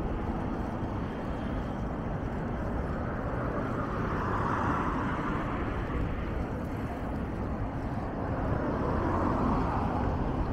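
Urban road traffic: cars passing, their noise swelling and fading about halfway through and again near the end, over a steady low rumble.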